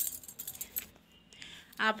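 Glass bangles clinking and jingling in a quick cluster of light, high clicks as the arm moves while handling a phone, followed by soft handling rustle.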